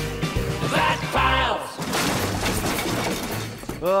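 A jingle-style theme song finishes, then about two seconds in comes a loud glass-shattering sound effect that slowly fades away.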